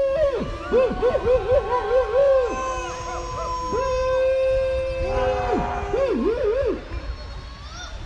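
Protesters' voices singing a slow chant: long held notes broken twice by quick wavering runs, with a second long note starting about two and a half seconds in.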